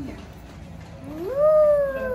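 A child's voice in one long drawn-out call starting about a second in, rising in pitch and then sliding slowly down.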